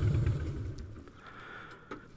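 Low motorcycle engine rumble that fades away over about the first second, leaving a faint hum, with a short click near the end.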